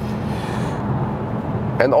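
Steady interior noise of a VW Golf GTI Clubsport cruising at motorway speed: tyre and wind noise with the low hum of its turbocharged four-cylinder engine underneath.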